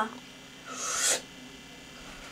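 A person's breathy, hissed vocal sound lasting about half a second near the middle, just after a grunted "uh" cuts off at the start.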